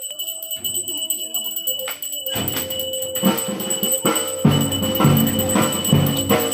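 Ceremonial processional music: bells ringing steadily, joined about two seconds in by deep drumbeats at about two a second.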